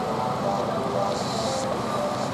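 Steady outdoor rushing noise with indistinct background voices murmuring through it.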